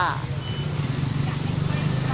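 A steady low motor-vehicle engine hum that swells slightly toward the end, after a single spoken syllable at the start.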